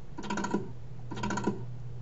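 Clicking at a computer's keyboard and mouse: two short bursts of rapid clicks about a second apart, each ending in a sharper click, over a steady low electrical hum.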